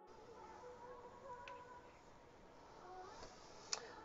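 Near silence: a faint, slightly wavering hum, with a small click near the end.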